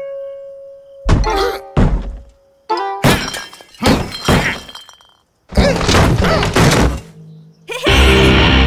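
Cartoon sound effects: a series of thuds and crashing clatters, several hits roughly a second apart, with a brief silence about five seconds in, over background music.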